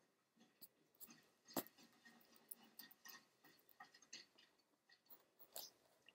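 Pencil writing on notebook paper: faint, scattered scratches and small ticks, with one sharper click about a second and a half in.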